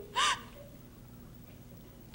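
A brief, high-pitched vocal cry a moment in, then a hushed pause of faint studio room tone.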